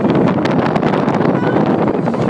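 Loud wind buffeting a phone's microphone on a moving roller coaster, with a dense run of sharp clicks and rattles from the ride.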